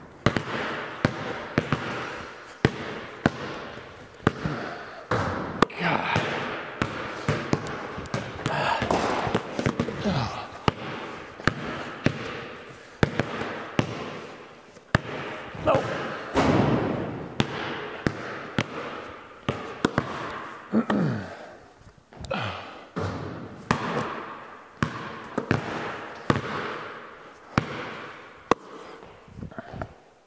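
Basketballs being dribbled on a concrete floor and shot at the hoop: irregular, sharp knocks, sometimes several a second, each echoing in a large, bare metal-walled building. Men's voices come in between.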